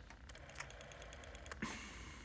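Rotary telephone dial being wound and released: a run of quick, even clicks as the dial spins back, then a louder scraping rattle about one and a half seconds in as the next digit is wound.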